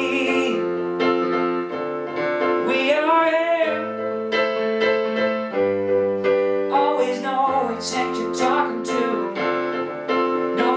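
A man singing a song while accompanying himself on piano: sustained chords under a sung melody, with the voice dropping out for stretches and the piano carrying on alone.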